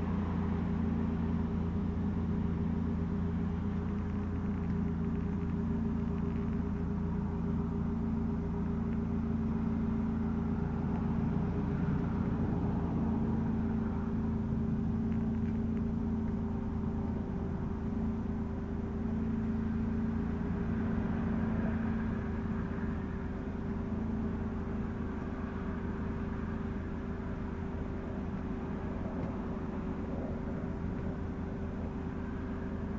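A steady low mechanical hum with a held droning tone, unchanging in level.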